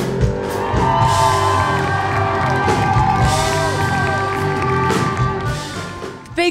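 Live rock band with electric guitars and drums ringing out held chords at the close of a song, while the crowd cheers and whoops; the sound eases off near the end.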